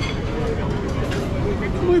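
Voices talking over the steady low background noise of a restaurant dining room, with a man starting to speak near the end.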